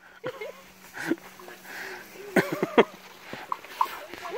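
A baby elephant snuffling, with soft breathy puffs as it lies with its trunk in loose dirt, mixed with a person's voice making short sounds without words.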